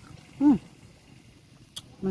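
A single short voiced call, falling in pitch, about half a second in, against quiet background, with a brief faint click near the end.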